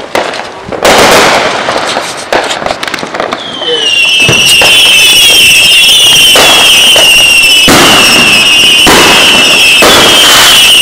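Aerial fireworks going off: loud bangs and crackling start about a second in. From about three and a half seconds a loud, continuous high-pitched whine with a slightly falling pitch sets in, with more bangs over it.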